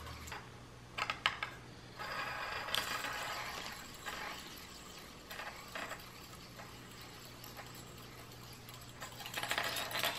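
Small plastic spin top with a magnetic tip spinning on a hard tabletop, a thin metal wire snake stuck to its tip rattling and scraping against the surface in a light buzz. The buzz is loudest from about two to four seconds in and again near the end. A couple of sharp clicks come about a second in.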